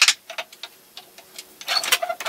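Light clicks and knocks of a red elm plane tote being handled on a wooden workbench: a sharp click at the start, a few faint ticks, then a quick run of clicks and scrapes near the end.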